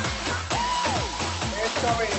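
Upbeat electronic dance music with a steady, evenly repeating beat and a voice line gliding over it.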